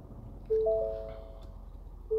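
Ford Super Duty cabin warning chime: a three-note electronic chime sounding once about half a second in and fading out, over the low steady hum of the 6.7-litre Power Stroke V8 diesel idling after a start.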